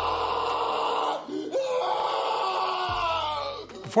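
Two long, strained, pained moans voiced as the truck's comic answer, the first breaking off about a second in and the second drawn out until just before the end.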